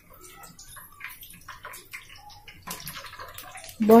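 Egg pakoras deep-frying in hot oil in a kadhai: a soft, irregular crackling sizzle, with a slotted spoon scraping the pan as it turns them over.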